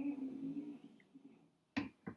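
A man's low, steady 'mmm' hum lasting under a second, then a short sharp click near the end.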